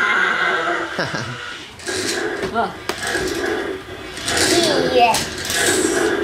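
Battery-powered toy dinosaurs playing recorded roars and growls as they walk, with a child laughing near the end.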